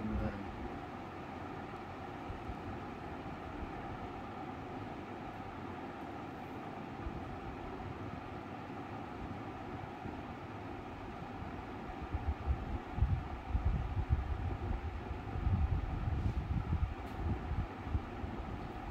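Steady mechanical hum in the room, with low gusty rumbling on the microphone during the last six seconds.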